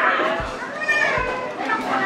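Voices talking over background music with a steady low beat, a thump about every 0.8 seconds.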